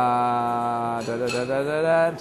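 A man's long, drawn-out hesitation sound, "uhhh", held at one steady pitch for about a second, then wavering slightly as it trails on, while he searches for the next name in a list.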